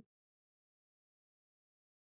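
Near silence: the sound track is dead quiet, with only the last trace of a laugh cut off at the very start.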